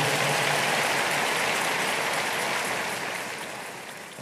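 A large congregation clapping. The applause is steady at first, then gradually dies away.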